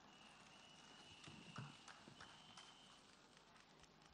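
Near silence: faint room tone with a thin, steady high tone and a few soft taps in the middle.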